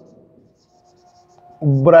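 Faint marker pen writing on a whiteboard, in a quiet stretch between the tail of a man's drawn-out word at the start and his speech starting again near the end.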